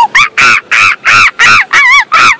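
An animal calling in a rapid series of loud, harsh, short calls, about four a second, each rising and falling in pitch.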